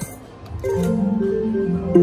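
Triple Double Diamond slot machine playing its short electronic win jingle, a run of stepped chime-like notes, after the reels stop on a 25-credit line win. A click near the end as the next spin starts.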